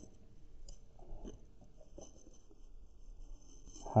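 Pen writing on lined exercise-book paper: faint, irregular scratching strokes.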